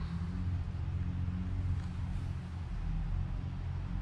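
A steady low hum with no other events: background machine or electrical hum in the room.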